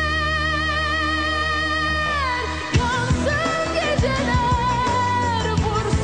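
Turkish pop song: a long note held with vibrato that slides down and ends about two seconds in, after which drums come in with a beat under a moving melody.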